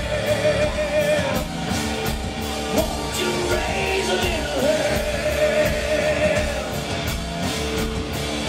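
Live hard rock band playing at full volume: a steady drum beat under guitars and bass, with long, wavering vocal notes held over the top.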